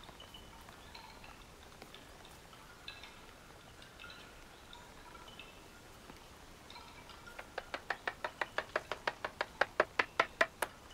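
Faint, scattered tinkling notes like a wind chime, then, from about three-quarters of the way in, a rapid series of sharp taps, about five a second, that grow steadily louder.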